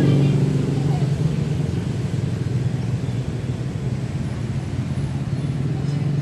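A motor vehicle engine running nearby, a steady low rumble that is loudest in the first second and then holds steady.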